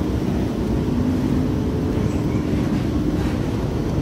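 Steady low rumble of a Eurotunnel shuttle train running through the Channel Tunnel, heard from inside a carriage, with a faint steady hum over it.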